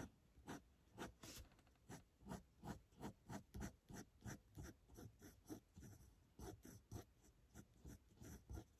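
Graphik Line Maker 0.3 mm fineliner pen scratching on paper in short quick strokes, about three a second, faint.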